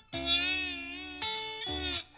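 Electric guitar played with a glass slide in standard tuning: sustained slide notes with vibrato, three in a row, the second about a second in and the third near the end, where they cut off sharply.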